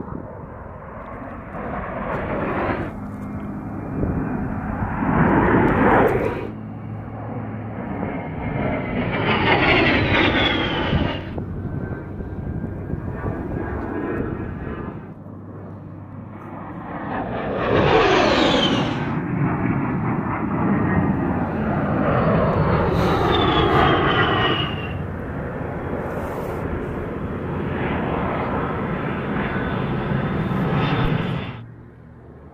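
The twin TF34 turbofan engines of an A-10C Thunderbolt II jet on several edited fly-bys. Each pass swells to a loud rush of jet noise with a high whine that falls in pitch as the aircraft goes by. The passes are joined by abrupt cuts.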